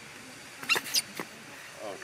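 Baby macaque giving three short, sharp, high squeaks in quick succession in the middle, then a brief lower call near the end.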